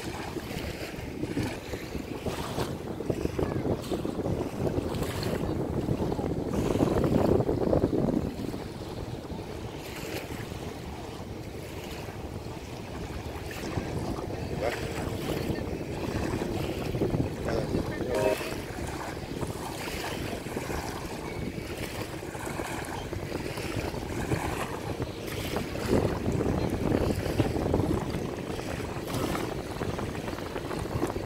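Wind buffeting the microphone, swelling in gusts about seven seconds in and again near the end, over the wash of small river waves.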